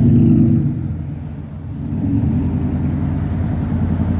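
Motor vehicle engine running nearby, a steady low hum that eases off about a second and a half in, then builds again.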